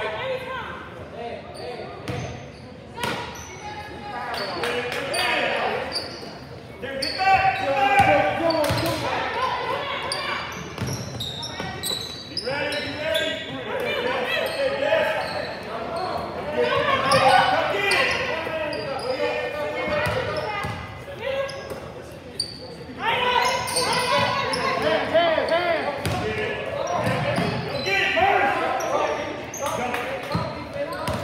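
Sounds of a basketball game echoing in a large gym: voices calling and shouting across the hall, with a basketball bouncing and knocking on the hardwood floor now and then.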